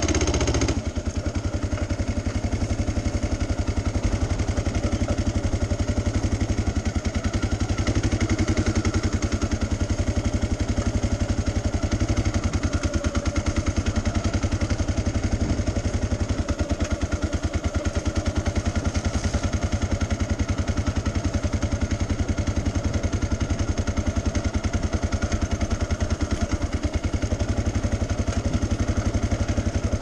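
Motorcycle engine running steadily at low, even revs while the bike rolls slowly along, with a fast, regular pulsing from the exhaust.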